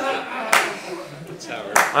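Audience laughing with scattered clapping, and two sharper claps or knocks stand out about half a second in and near the end. A man's voice starts speaking at the very end.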